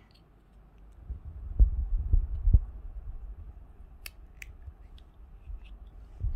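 Handling noise from a small printed cardboard box being folded by hand: dull low thumps and rubbing for about two seconds, then two short light clicks.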